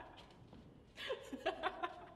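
A woman laughing in short, quiet bursts, starting about a second in.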